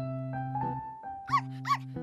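A small dog giving two short, high yips under half a second apart, each rising then falling in pitch, over light piano background music.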